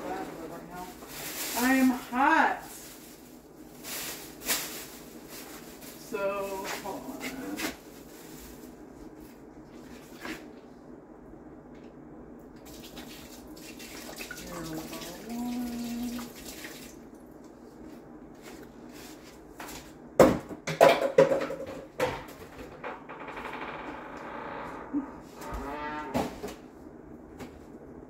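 Scattered knocks and clicks of things being handled in a kitchen, the loudest cluster about twenty seconds in, with stretches of hiss and short snatches of a low voice.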